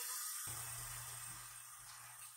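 Tap water running in a steady hiss that slowly fades, rinsing lash shampoo out of strip false lashes.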